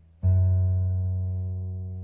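Electric bass guitar playing one finger-plucked note at the fourth fret, starting sharply about a quarter second in and ringing on with a slow fade.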